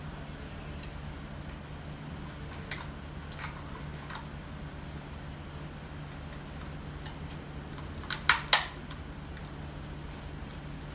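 A plastic lens and gimbal protector being fitted onto a DJI Mavic Mini drone: a few light clicks, then a quick cluster of sharp snaps about eight seconds in as it clips into place.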